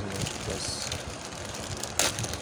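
Thin black plastic mailer bag crinkling and rustling as hands pull it open, ending in a sharp crackle.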